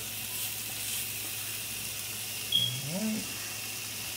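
Sliced hot dogs sizzling on a hot griddle pan as they are laid down, a steady frying hiss. A short, high-pitched squeak about two and a half seconds in is the loudest moment.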